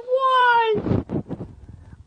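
A person's high, drawn-out wail that falls slightly and breaks off under a second in, followed by short breathy gasps: a cry of anguish.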